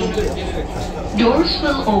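Voices talking inside a metro train car, over a steady low rumble from the train.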